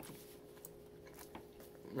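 Quiet chewing of an oatmeal muffin, with a few faint small clicks.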